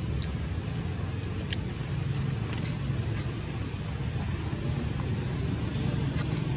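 Steady low outdoor background rumble, with a few faint clicks and a short, thin high-pitched chirp about two-thirds of the way through.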